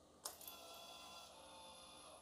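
A click as the Yamaha TZM 150's ignition is switched on, then the YPVS power-valve servo motor whirs faintly and steadily for nearly two seconds on its key-on cycle before stopping, a sign the servo is in good condition.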